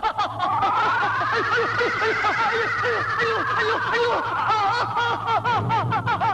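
A fast run of short, pitched chattering calls, about six or seven a second, over a higher tone that rises and then falls. The calls come quicker near the end, with a low steady hum underneath.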